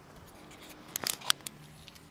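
A quick run of five or six light, sharp clicks about a second in, over a low background. No engine is running.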